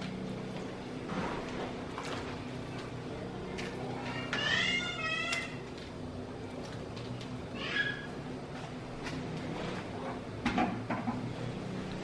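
A small animal's high-pitched wavering call, about a second long, about four seconds in, and a shorter one near eight seconds, over a steady low hum. Faint soft knocks come as pieces of pork rib are dropped into a pot of water.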